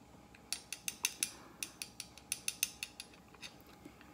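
A quick, irregular run of light clicks and clinks, about fifteen in three seconds: a glass hot sauce bottle shaken and tapped against a metal spoon to work a thick sauce out.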